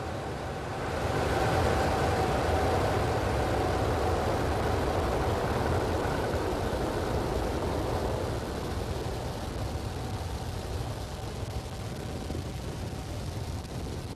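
Falcon 9 rocket's nine first-stage Merlin engines firing just after liftoff, a steady, dense noise with most of its weight in the low end. It swells over the first couple of seconds, then slowly fades as the rocket climbs away.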